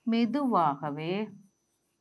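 A woman's voice speaking a short phrase, lasting about a second and a half.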